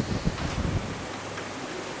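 Steady hiss of recording background noise, with a few low thumps in the first second.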